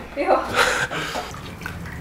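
Soup poured from a ladle into a bowl, a brief liquid splash under short speech.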